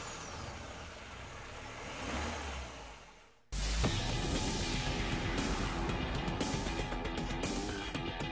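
Radio-show jingle: a car engine sound effect with a rushing noise swells and fades away. About three and a half seconds in, a music bed starts abruptly and runs on with a steady beat.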